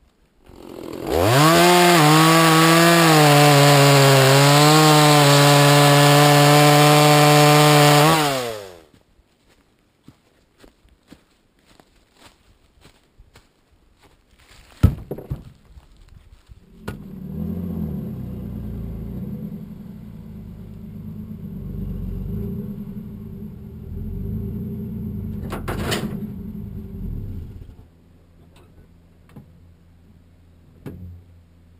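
Chainsaw revving up to full throttle about a second in and running hard for about seven seconds, its pitch wavering slightly, then winding down. After a pause broken by a knock, a pickup truck's engine runs as it drives, rising and falling in pitch for about ten seconds before it stops near the end.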